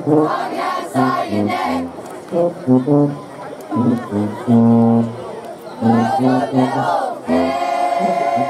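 A brass band plays a rhythmic riff of short, punchy low notes, with one longer held note about halfway through, over crowd voices.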